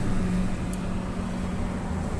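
A Nissan car's engine running steadily at idle, heard from inside the cabin as an even low hum with a constant low tone.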